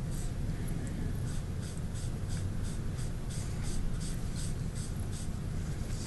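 Cotton pad rubbing powdered pastel chalk onto paper along the edge of a paper mask, in quick, even back-and-forth strokes about three a second, over a steady low hum.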